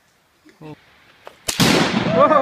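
A Tannerite explosive target detonating with one sharp, loud boom about one and a half seconds in, its blast echoing on afterwards.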